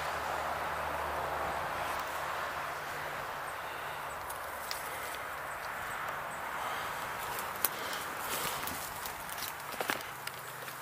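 Footsteps crunching on dry twigs and forest litter, with scattered sharp snaps in the second half, the loudest a little after halfway. Behind them runs a steady rush of highway traffic that eases over the first few seconds.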